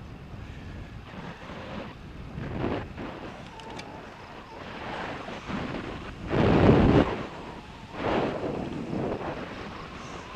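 Wind rushing over the microphone of a camera on a moving bicycle, coming in uneven gusts. The loudest gust comes about six and a half seconds in, with another a second or so later.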